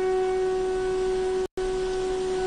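Orchestral backing music holding one long, steady note, broken by a brief dropout in the sound about one and a half seconds in.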